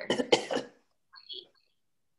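A woman coughing: a quick run of about three short coughs in the first half-second or so.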